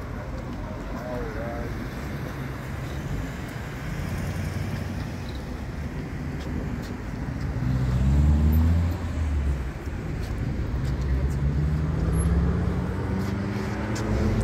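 Road traffic: cars passing on a street, with one vehicle's engine loudest about eight seconds in and another engine rising in pitch as it speeds up near the end.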